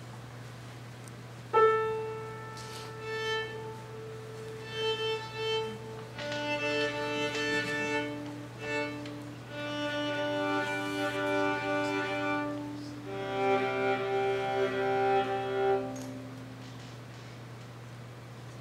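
A single piano note struck about a second and a half in, then two violas bowing long held notes and two-note chords as they tune to it. The playing stops a couple of seconds before the end.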